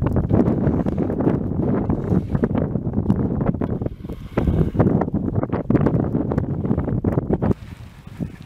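Wind buffeting the microphone: loud, gusty low noise that cuts off suddenly near the end.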